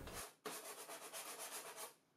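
Faint hand sanding: sandpaper rubbed quickly back and forth over a surface in short, even strokes, about seven or eight a second.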